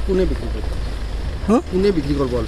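A man's voice in short broken phrases, with a pause in the middle, over a steady low rumble.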